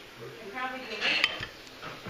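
Metal food can handled on a table, with a sharp ringing metallic clink a little past the middle.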